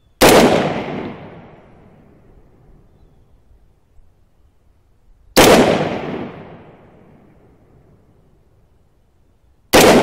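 AR-15 rifle firing single shots of 55-grain .223 factory ammunition: three shots, the first two about five seconds apart and the third about four seconds later near the end. Each crack is followed by a fading echo lasting about a second and a half.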